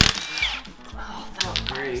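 Cordless impact wrench giving a short burst right at the start as it spins a lug nut loose, then a sharp metallic clink with a thin ringing about one and a half seconds in as the loosened lug nut is handled.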